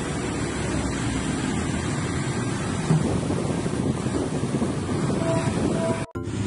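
Outdoor road traffic noise: a steady rumble of passing vehicle engines with wind buffeting the microphone. A single sharp knock about three seconds in.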